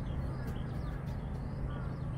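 Faint, scattered bird chirps over a steady low rumble of outdoor background noise.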